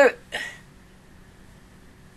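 A woman's voice trails off, and about a third of a second later comes one short breathy exhale. After that there is only quiet room tone with a faint steady hum.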